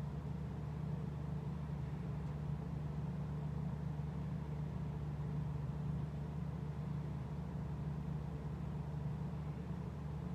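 Steady low background hum with no distinct events: the room's machine noise, running evenly throughout.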